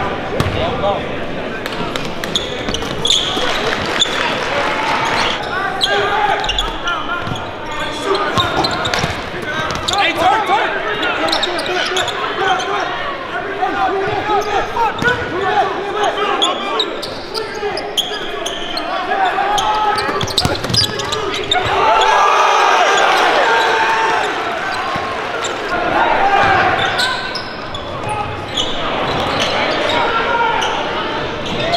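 Live gym sound at a basketball game: a hubbub of many crowd and player voices, with a basketball bouncing on the hardwood court now and then.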